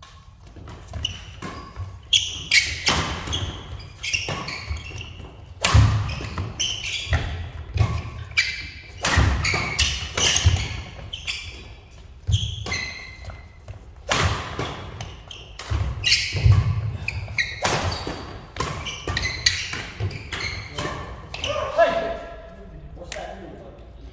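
Doubles badminton rally in a large hall: sharp racket strikes on the shuttlecock, heavy thuds of players' feet landing on the court, and short high squeaks of court shoes, echoing in the hall. The play stops about two seconds before the end.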